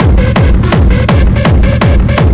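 Hard techno track: a heavy kick drum hits about three times a second, each hit falling in pitch, under a dense, noisy layer of high percussion.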